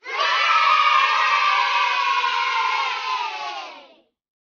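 A group of children cheering, many voices at once, starting abruptly and holding steady before fading out near the end, like an inserted cheering sound effect.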